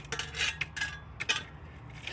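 Metal garden rake scraping and clinking through loose gravel in a few short, irregular strokes, clustered near the start and again just past a second in.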